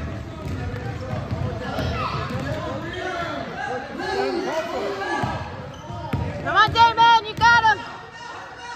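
Youth basketball game in a gym: a ball dribbling on the hardwood court under a mix of voices echoing in the hall, then several loud, high-pitched shouts near the end.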